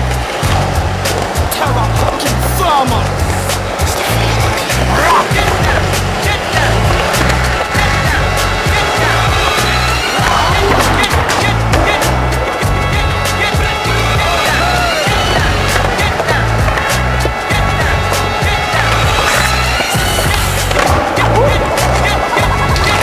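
Hip-hop instrumental beat with a heavy, evenly repeating bass line, over a skateboard on a concrete floor: the wheels rolling and sharp clacks as the board pops and lands.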